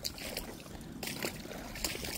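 Steady rush of a brook's flowing water, with a few soft clicks.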